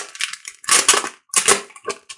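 Gold metallic gift wrapping crinkling as it is handled and opened, in several short bursts.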